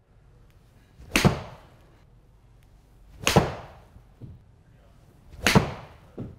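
Mizuno JPX 921 Hot Metal 7-iron striking golf balls in an enclosed simulator hitting bay: three sharp impacts about two seconds apart, each with a short ringing tail.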